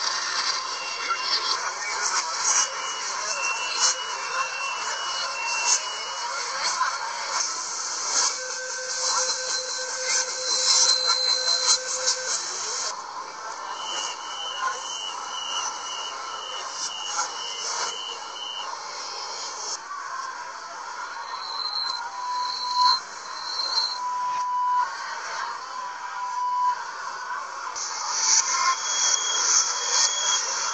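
Chinese metro door-closing warning signals played backwards, from several trains in turn. First a short run of chime notes, then a held buzzer tone, then a run of rapid beeps about two per second, then a few short beeps near the end, all over a steady hiss of carriage and station noise.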